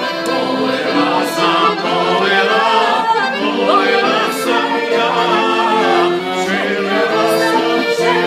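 Piano accordion playing a song while a woman and a man sing along together.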